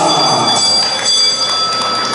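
Audience applauding in a large hall, with a high steady ringing tone over the clapping.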